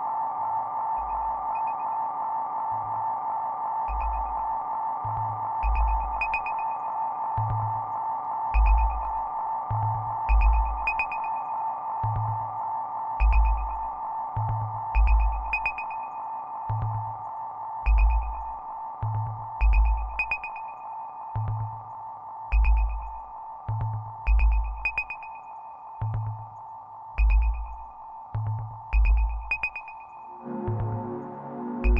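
Live electronic music: a steady high synth drone held throughout. About four seconds in, deep sub-bass hits in a slow, broken rhythm join it, along with light, crisp percussive ticks.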